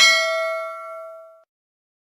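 A bell-like 'ding' sound effect for the subscribe animation's notification bell, struck once. It rings and fades for about a second and a half, then cuts off suddenly.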